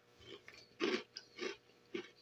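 Light, crunchy Pringles Mingles puff snacks being bitten and chewed, a handful of separate crunches.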